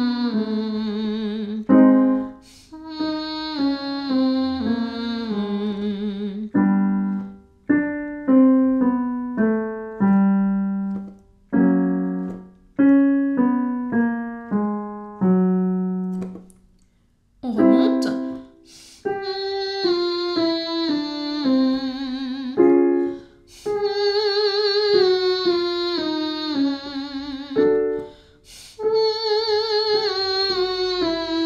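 Female voice singing the 'moito' vocal warm-up exercise over piano: short falling note patterns with vibrato, repeated with short breaks, each set a little higher than the one before.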